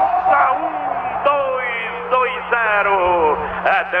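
A man's voice talking without pause in a Portuguese radio football commentary, over a steady low hum.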